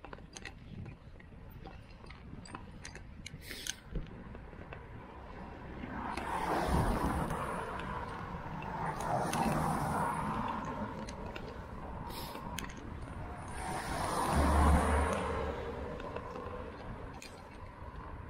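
Cars passing close by on a damp road, three in turn, each a swell of tyre and engine noise that rises and fades away; the last carries a deeper rumble. Small clicks and rattles from the bicycle are heard between them.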